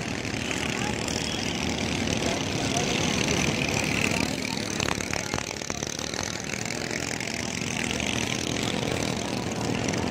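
Small long-shaft outboard motors on võ lãi boats running on the river, several at once, making a steady overlapping engine drone. A few short sharp clicks come about halfway through.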